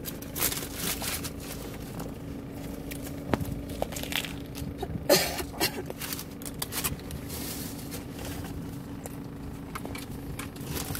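Paper burger wrapper and paper bag rustling and crinkling as a burger is handled, in short irregular bursts. The loudest crinkle comes about halfway through, over a steady low hum.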